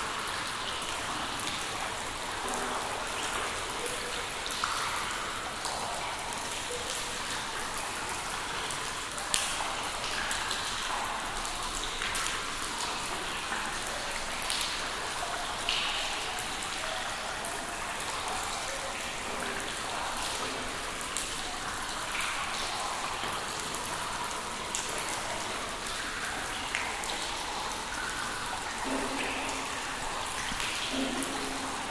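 Water drops falling and dripping in a cave, a steady patter over a constant wash of water noise, with scattered sharper drips; one stands out about nine seconds in.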